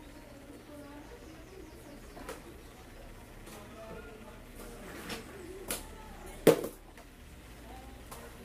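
A few sharp clicks and taps from hand tools at an electronics repair bench, the loudest about six and a half seconds in, over faint background voices.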